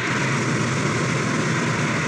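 An audience applauding, loud and steady.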